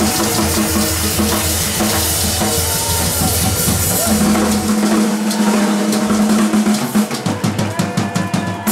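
Live band playing loud with drum kit, guitar and upright bass. About halfway through the bass drops out, leaving the drums and a held note, with a quick run of sharp drum hits near the end.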